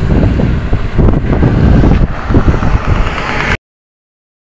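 A small SUV pulling away along a roadside, mixed with heavy wind rumble on the microphone. The sound cuts off suddenly near the end.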